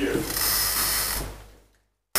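A steady high hiss on a poor backup lecture-hall recording, lasting about a second. It fades, then the audio cuts out to dead silence near the end: a recording dropout.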